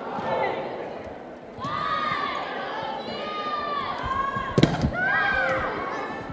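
Spectators and players in a gym shouting and cheering in high voices, several overlapping, starting about one and a half seconds in. About four and a half seconds in, a volleyball is hit with a single sharp smack.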